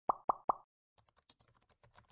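Three quick, loud pop sound effects, then rapid computer keyboard typing clicks starting about a second in, as text is entered into a search box.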